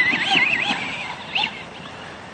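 Radio-controlled car's motor whining as it drives off across grass, the pitch wobbling up and down with the throttle and fading as the car moves away.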